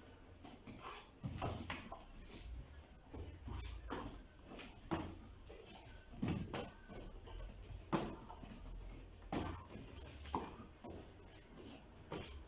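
Shin-guarded kicks landing on a partner's thigh, traded in turn: a dull thud roughly every second at an uneven pace.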